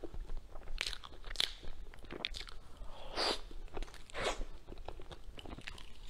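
Close-miked chewing of a soft steamed bun: a run of small mouth clicks, with a few louder noisy bursts about a second in and again around three and four seconds in.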